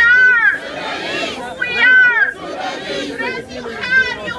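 Crowd of protesters chanting a slogan in rhythm: a loud, high shouted call comes about every two seconds over the mass of voices.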